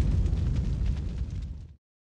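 Tail of a deep cinematic boom from a logo-sting sound effect: a low rumble fading away, cut off shortly before the end.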